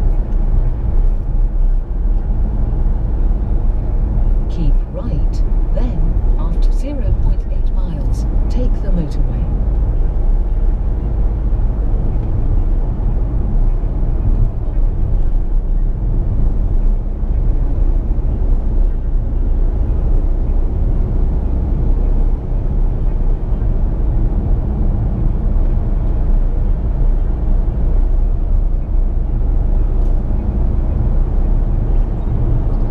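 Steady road and engine noise inside the cabin of a Peugeot 3008 SUV cruising on a motorway while towing a caravan.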